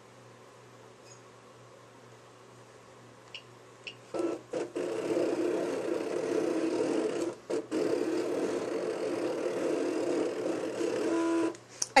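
Cricut electronic cutting machine cutting a two-inch moon shape from white paper: a couple of faint key clicks, then about four seconds in its motors start a steady whirring drone with a few brief pauses as the blade carriage and mat move, stopping about a second before the end.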